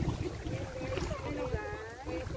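Women's voices talking, with low wind rumble and handling noise on a handheld phone's microphone.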